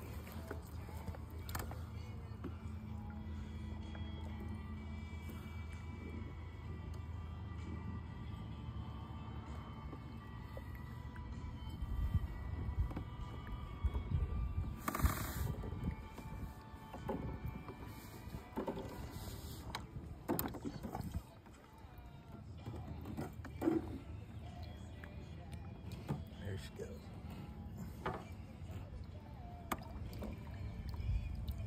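Lake water splashing and lapping at a kayak's side as a large largemouth bass is held in the water and released, with scattered splashes and knocks from about twelve seconds in.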